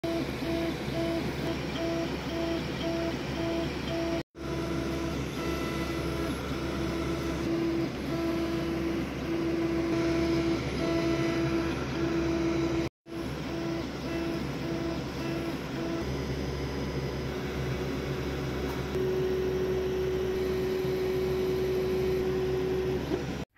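Longer Ray5 10 W laser engraver raster-engraving: a steady fan hum under the stepper motors' whine, which switches on and off in short pulses as the head sweeps back and forth. The sound cuts out briefly twice, and near the end the whine holds one steady note for a few seconds.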